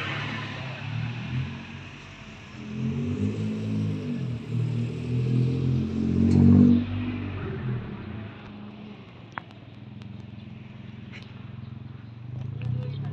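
A motor vehicle engine revving as it passes, its pitch rising and falling several times. It is loudest about six and a half seconds in, then fades to a low background rumble.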